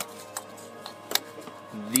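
Small plastic clicks as an ignition coil's electrical connector is pushed onto the coil of a Ford 3.5L DOHC V6. The sharpest click comes about a second in: the click that shows the connector is seated. Faint steady background music runs underneath.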